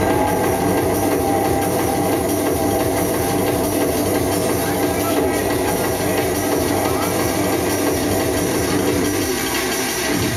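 Drum and bass / industrial hardcore DJ mix playing at club volume in a beatless breakdown: a dense, noisy rushing sound in the middle range, with the deep bass and kick drum dropped out from the start.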